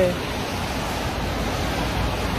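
Steady rain falling: an even hiss with a low rumble underneath.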